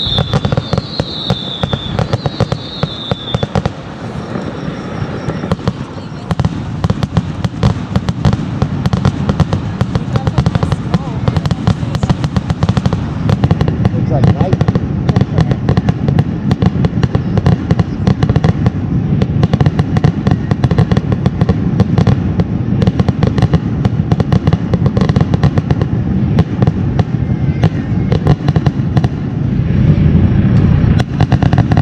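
Aerial fireworks going off in a rapid, continuous barrage of bangs and crackles, growing denser after the first few seconds. A few short whistling tones sound in the first three seconds.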